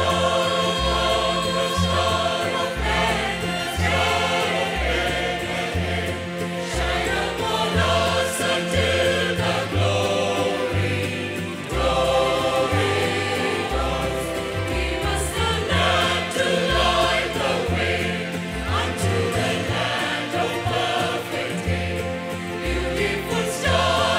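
Mixed choir of women's and men's voices singing a Christmas carol in parts, accompanied by an electronic keyboard with a stepping bass line.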